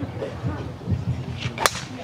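A titanium golf driver striking a ball teed up high: one sharp, short crack of impact near the end.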